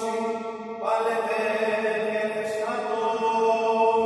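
Greek Orthodox Byzantine chant: voices holding long notes over a steady drone, moving to a new note about a second in and again near three seconds.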